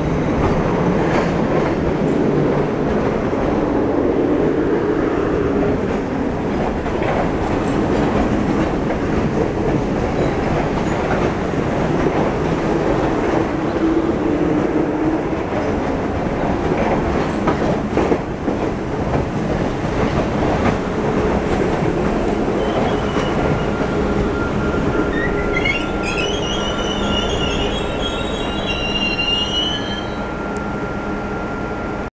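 MBTA Red Line subway train running into a platform: a steady rumble of wheels on rail with scattered clicks as the cars pass. In the last several seconds a high squeal rises and holds as the train brakes to a stop, with a steady hum underneath.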